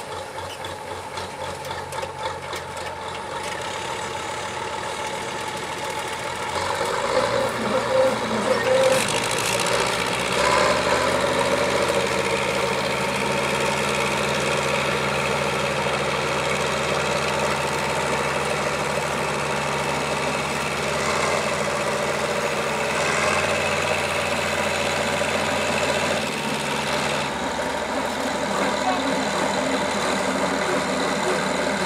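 Diesel engines of a Bizon combine harvester bogged in mud, with a tractor alongside, running at a fast even idle. About seven seconds in they are revved up and held steady at high revs, then ease back near the end.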